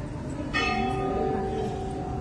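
A brass temple bell struck once about half a second in, ringing on with several bright overtones and slowly fading.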